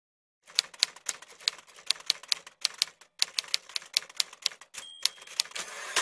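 Manual typewriter keys clacking in quick, uneven strikes, about four a second. Near the end comes a short bell ring and a rasping slide of the carriage return.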